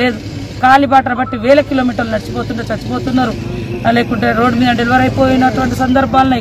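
A woman speaking Telugu without pause, over a steady low hum in the background.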